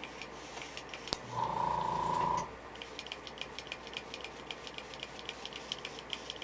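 An airbrush fired in one short burst of about a second at high air pressure to splatter paint, a hiss of air with a steady whistle-like tone, just after a sharp click. A fast run of light ticks follows.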